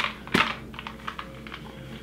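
A few light metallic clicks and taps from a stainless steel cocktail shaker being handled, with one sharper click about a third of a second in.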